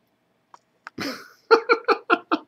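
A man's sharp breathy exhale about a second in, then a quick run of short bursts of laughter. Two faint clicks come just before.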